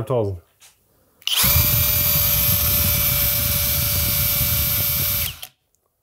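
Flex PD 2G 18.0-EC brushless cordless drill/driver running free at no load in second gear with Turbo engaged, at about 2,450 rpm. It gives a steady high motor whine for about four seconds, starting about a second and a half in and cutting off near the end.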